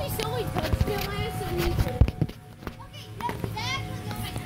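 Children's voices: unworded talking and calls, with a short high squeal near the end and a couple of sharp knocks.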